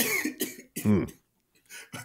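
A man's voice in three short, abrupt bursts in the first second, then a pause and a faint burst near the end.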